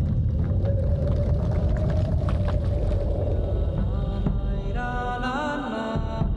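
Film soundtrack: a deep, steady rumble under sustained droning music, with a held chord that slides upward about five seconds in.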